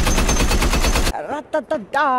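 Rapid automatic gunfire from a film soundtrack, about ten shots a second, cutting off abruptly about a second in.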